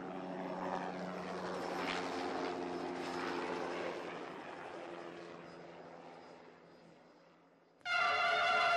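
A steady drone of low hum and hiss that swells a little, then slowly fades out, dying away shortly before the end.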